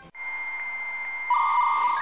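Electronic beeping sound effect: a steady high tone, joined about two-thirds in by a louder buzzing tone.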